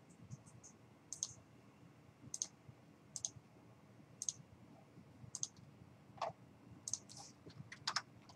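Faint computer mouse clicks, single sharp clicks about once a second with short gaps between.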